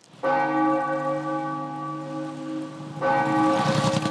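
Large tower bell struck twice, about three seconds apart, each stroke ringing on with a steady hum of overtones.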